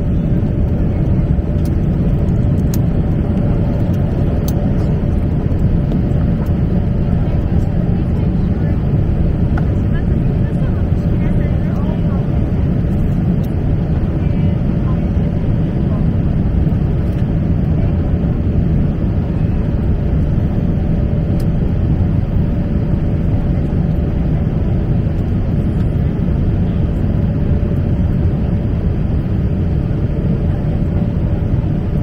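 Airliner cabin noise in flight: a steady low rush of jet engines and airflow with a constant hum over it.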